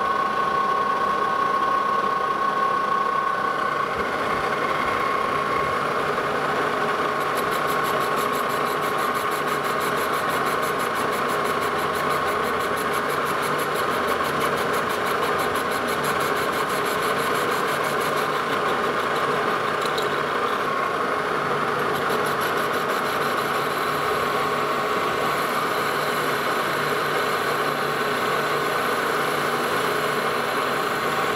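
Metal lathe running steadily with a constant whine while a tool takes a light facing cut, about ten thousandths deep, on a steam-locomotive throttle valve turned between centres.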